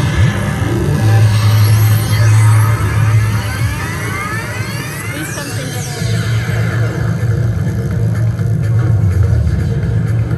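Slot machine bonus-wheel sound effects and electronic game music as the prize wheel spins, with several rising sweeps in the first half over a deep, steady bass.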